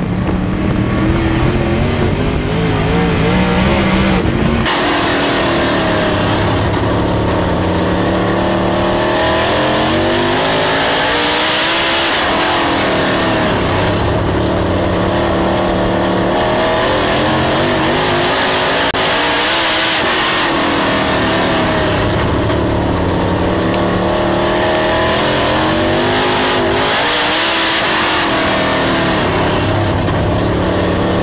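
Dirt late model race car's V8 engine at racing speed, heard on board, its pitch rising and falling with the throttle through the turns about every seven to eight seconds. A few seconds in, the sound turns abruptly brighter as the audio switches from the front camera to the rear camera.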